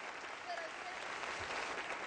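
A large audience applauding steadily, with a few faint voices mixed in.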